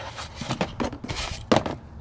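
A spigot cover's loop being worked around a metal outdoor hose spigot by hand: a handful of short, irregular scrapes and clicks.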